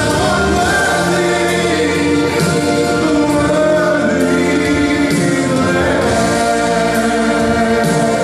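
Gospel song: a male singer's voice over a full choir backing, in long held notes.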